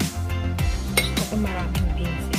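Background music with a regular beat, and about a second in a single metallic clink of a metal spoon knocking against the cooking pot.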